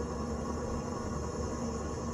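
Steady background noise with a faint low hum; no distinct events stand out.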